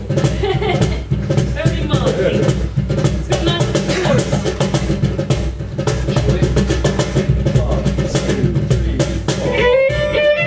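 Acoustic string band playing an old-time fiddle tune live: strummed guitars and mandolin over a steady cajon beat. The fiddle comes to the fore near the end.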